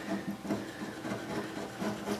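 A sharp hand chisel paring thin shavings off the high spots of an upright bass's wooden neck joint: faint, irregular scraping strokes.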